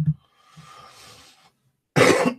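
A short low throat or voice sound from a man, then about a second of soft rustling hiss, and he starts clearing his throat right at the end.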